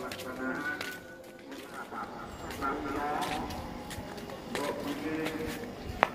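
Faint voices in the background, some of them drawn out as if chanted or sung.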